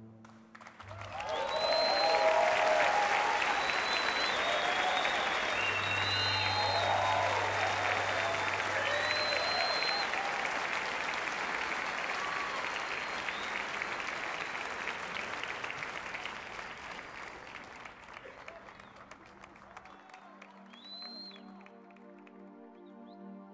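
Concert audience applauding with whistles and cheers. The applause swells about a second in and slowly dies away over the second half, and soft sustained music comes in near the end.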